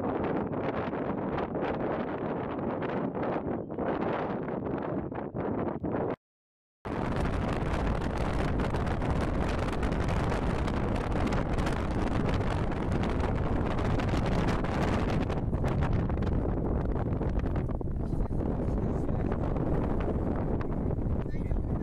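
Wind buffeting the microphone as a steady, dense rush. The sound cuts to silence for about half a second some six seconds in, then returns with a heavier low rumble from the gusts.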